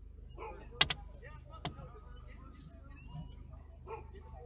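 A few sharp clicks inside a car, the loudest a quick double click about a second in and a lighter one shortly after, over faint voices.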